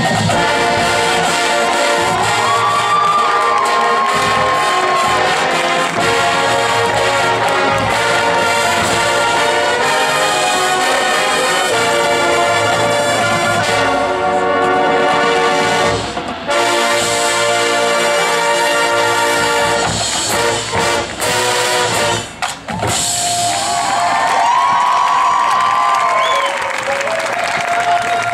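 Marching band brass and percussion playing a North African, Moroccan-themed halftime show. Full ensemble chords and moving melody, with brief breaks about sixteen seconds in and again around twenty-two seconds, after which a gliding melodic line rises and falls.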